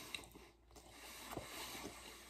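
A person chewing a mouthful of burrito with the mouth closed, faint, with a few soft wet clicks.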